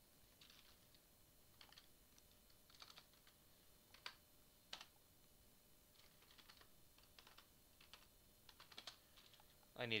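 Faint computer keyboard typing: about a dozen scattered, irregular keystrokes as a short search term is typed in.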